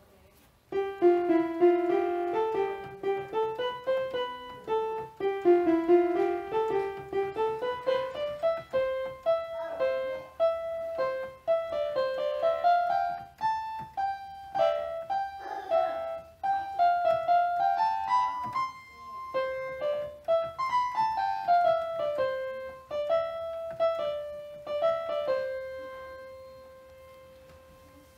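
Electronic keyboard playing a simple self-composed melody, mostly one note at a time, beginning about a second in. The tune ends on a long held note that fades away near the end.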